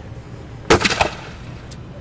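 Restored Civil War-era cannon firing once: a single sharp blast about two-thirds of a second in, followed by a second, weaker sharp sound a third of a second later.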